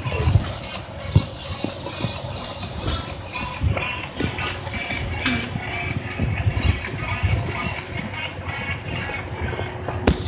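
Music playing in the background while the phone's microphone is rubbed and knocked against clothing and a car seat, giving irregular muffled thumps and fabric noise throughout.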